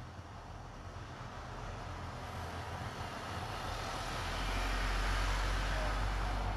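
Low rumble of a passing vehicle that builds steadily for about four seconds and is loudest near the end.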